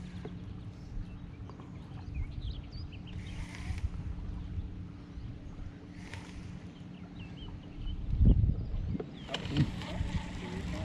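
Steady low hum from a fishing boat, with water and wind rumble on the microphone. A few faint high bird chirps and two short hissing bursts come through. A louder low thump comes about eight seconds in.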